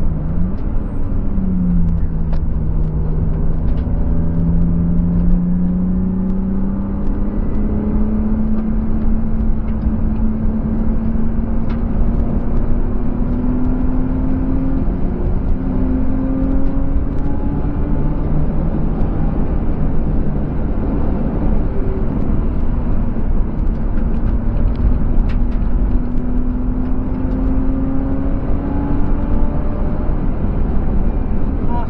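BMW E36's M50B25TU straight-six, heard from inside the cabin under a steady rush of wind and road noise. Its note dips near the start, rises steadily for over ten seconds, falls back lower around the middle, and climbs again near the end as the car picks up speed on track.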